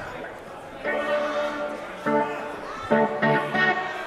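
Electric guitar notes and chords picked loosely between songs, struck three times about a second apart and left ringing, in a concert hall.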